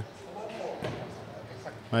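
A bowled bocce ball landing on the court with a thud a little under a second in, then rolling, under a faint murmur of voices in the hall.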